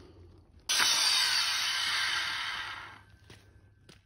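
A loud rush of hissing noise that starts abruptly about two-thirds of a second in and fades out over the next two seconds.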